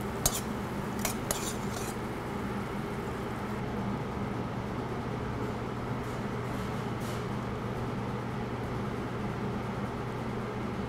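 A few light clinks of a utensil against a metal bowl and plate as cooked white beans are spooned out, mostly in the first two seconds, with fainter ones later, over a steady low kitchen hum.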